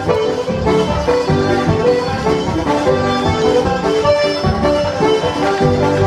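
Live céilí band playing Irish traditional dance music for set dancing, a steady dance tune with a regular beat.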